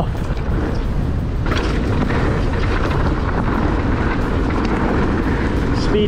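Wind buffeting the camera microphone, with mountain-bike tyres rolling fast over a dry dirt trail: a steady low rushing noise.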